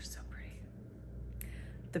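A woman's soft breath and whispery voice in a pause between words, over a low steady hum. A single faint click comes about one and a half seconds in, and she speaks a word just at the end.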